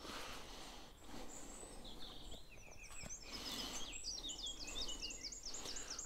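Songbirds singing, faint, over a quiet outdoor background. From about halfway one bird repeats a quick series of high notes, roughly six a second.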